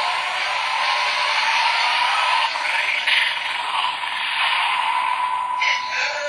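DX Forceriser toy belt with the Zero-Two Driver Unit playing its electronic transformation sound effects through its small built-in speaker: a dense, noisy rush over a steady held tone, thin and tinny with no bass.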